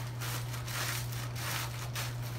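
Ritz crackers crushed by hand inside their plastic sleeve: an irregular run of crunches and wrapper crinkles, over a steady low hum.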